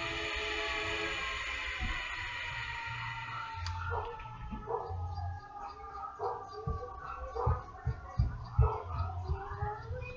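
A long howl that slowly falls in pitch over the first four seconds, followed by shorter wavering calls.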